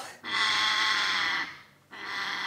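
African grey parrot giving one held call of about a second, steady in pitch, that fades away.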